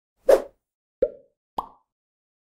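Three short pop sound effects from an animated logo intro, about two thirds of a second apart. The first is the loudest and the last is the highest-pitched.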